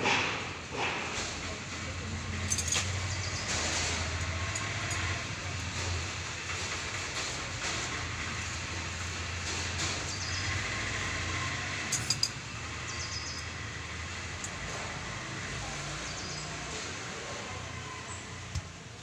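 Steady outdoor background noise with a low droning hum that fades out about eleven seconds in, and a few light clicks about a second later.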